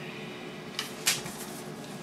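Two brief knocks of small handling noise close together about a second in, the second louder, over a steady low room hum.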